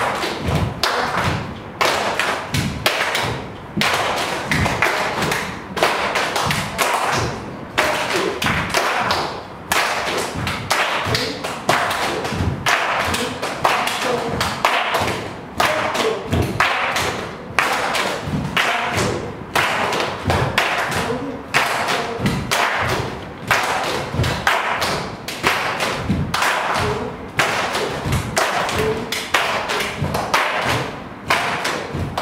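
Group body percussion: many bare feet stamping on a dance floor and hands clapping together in a repeating rhythm.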